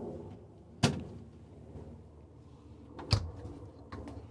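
Small built-in RV refrigerator doors: a sharp click about a second in as the freezer compartment door snaps shut, then a thud and latch click near the end as the main door is pushed closed.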